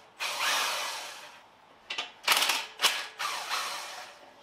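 Bursts of mechanical rattling and clicking from a tool at an engine stand's mounting head, where the bolts holding a hoisted engine block to the stand are being undone. One longer run comes near the start, then several short bursts follow in the second half.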